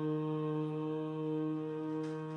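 Harmonium holding a steady drone chord for kirtan in raag Basant.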